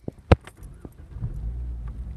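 A manual car's ignition being turned: a sharp click, then about a second in the engine starts and runs at a steady low idle.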